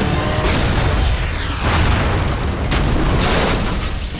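Cartoon battle sound effects: a loud energy blast and explosion rumbling, surging several times, over dramatic background music.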